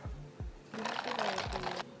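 Iced coffee sipped through a straw: a noisy slurp lasting about a second, starting partway in. It sits over background music with a steady beat of about two thumps a second.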